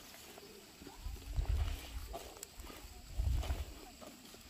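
Wind rumbling on the microphone in two gusts, about a second in and again past three seconds, over a faint rustle of the open field.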